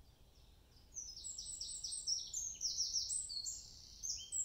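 A songbird singing close by: after about a second of quiet woodland background, one loud song of quick, high notes, each sliding downward, that runs for nearly three seconds and drops lower near its end.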